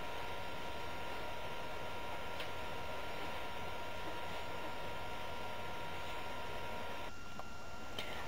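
Steady background hiss with a faint high electrical whine. Both drop away about seven seconds in.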